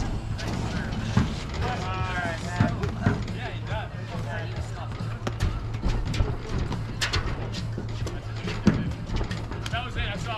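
Paddles striking the ball in a doubles rally: several sharp hits at uneven intervals, a second or more apart. A steady low hum and background music run beneath, and a voice is briefly heard.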